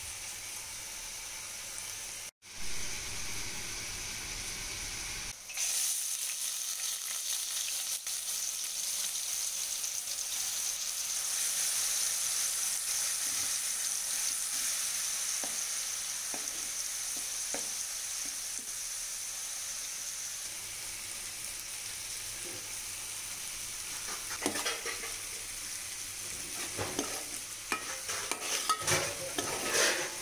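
Chopped onions frying in hot oil in an aluminium pot, a steady sizzling hiss that breaks off briefly a couple of seconds in and comes back louder. In the last few seconds a steel spoon scrapes and knocks against the pot as the onions are stirred.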